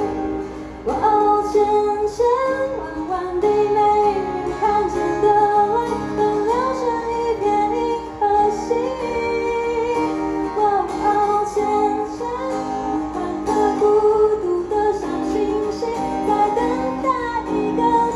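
A woman sings a melody while strumming an acoustic guitar, heard live through a small PA.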